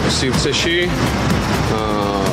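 A man's voice speaking, over a steady low background rumble.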